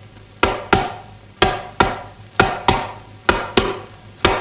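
Percussion scoring a kung fu fight, in the manner of Cantonese opera: sharp struck beats in pairs, about one pair a second, each ringing out briefly. It starts about half a second in.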